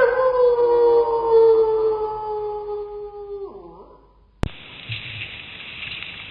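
One long howl, held on a single note that slides slowly downward for about three and a half seconds before it falls away, followed by a sharp click.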